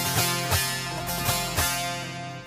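Bağlama (long-necked Turkish saz) playing an instrumental phrase between sung lines: sharp strummed and plucked notes that ring on, four strong strokes over a steady low tone.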